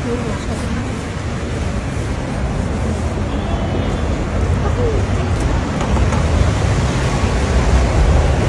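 Steady rainy city-street noise: a low traffic rumble under a hiss of rain and wet pavement, slowly growing louder, with faint voices.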